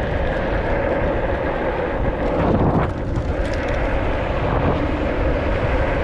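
Steady rush of wind and road noise from riding a small electric motorbike along a street, with a steady hum running underneath.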